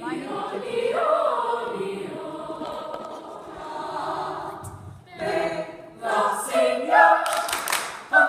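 A group of young cast members singing together as a chorus. A brief burst of sharp sounds comes near the end.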